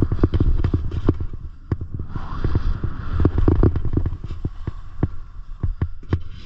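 Skis running over firm, tracked snow: edges scraping, with many irregular knocks and a steady low rumble.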